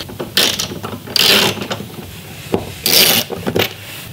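Socket ratchet wrench clicking in several rasping bursts as it is worked back and forth, loosening the bolts that hold a mill's Z-axis column to its wooden shipping board.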